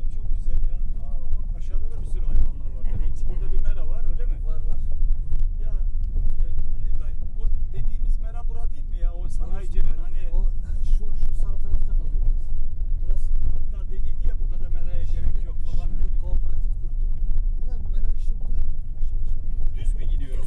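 Steady low rumble of a car driving, heard from inside its cabin, with scattered small knocks and rattles. People are talking and laughing over it.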